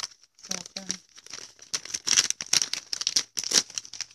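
Hands pulling apart a smoked fish on its wrapping sheet, a run of quick crinkling and tearing noises as the skin and flesh are peeled.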